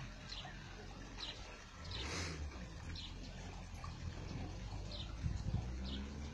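Faint car-wash bay sounds: a short hiss of spray about two seconds in, over a low steady machine hum. A high short chirp repeats about once a second.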